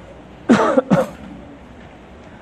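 A man clears his throat with two short coughs into his hand, about half a second and one second in.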